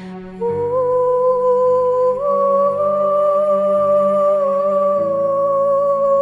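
Slow meditative music: a wordless female voice hums a long held note that steps up slightly twice early on, over soft, low sustained chords.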